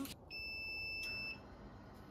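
A single steady, high electronic beep lasting about a second, with a sharp click partway through it.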